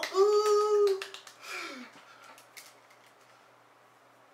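A man's wordless voice: one held note of about a second, then a shorter note that slides down in pitch, with a few sharp clicks among them.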